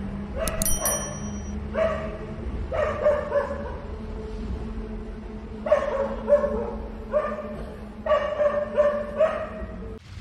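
Dogs barking at a monkey to drive it away: short, sharp barks in groups of two or three with pauses between them.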